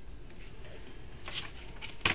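Quiet pause in a small room: a low steady hum with a couple of faint, brief hissing noises about one and a half seconds in.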